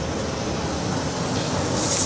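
Steady sizzle and hiss of rice toasting in hot olive oil with wilted onions and shallots in the pan, growing brighter and louder near the end.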